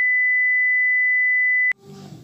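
Steady, single high-pitched test tone of the kind laid over colour bars, cutting off suddenly with a click near the end.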